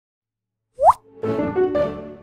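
Logo intro sound effect: a quick rising 'plop' just under a second in, followed by a short musical sting of a few notes.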